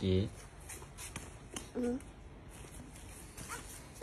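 A toddler's short vocal sounds, one at the start and another near two seconds in, with a few faint clicks in between in a quiet room.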